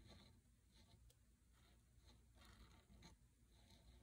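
Faint scratching of a pen tip on paper: a series of short strokes as a kanji character is written by hand.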